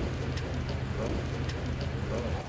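Steady outdoor background noise from the scene: an even hiss over a low hum, with a few faint ticks.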